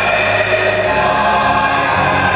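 Large mixed gospel choir singing long held chords, the notes sustained steadily.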